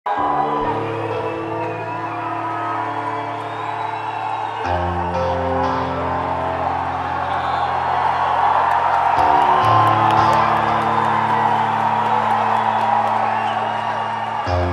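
Live rock band playing long held chords that change about every four and a half seconds, with a concert crowd whooping and cheering underneath. The cheering swells in the middle of the stretch.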